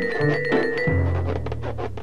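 Background music from a cartoon score: a bass line of held notes under a sustained tone and light, regular ticking percussion.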